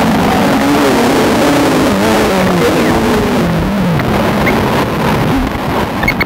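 Electronic improvisation on a Ciat-Lonbarde Cocoquantus 2 looping delay instrument: several wavering pitches bend and glide up and down over a dense, noisy wash.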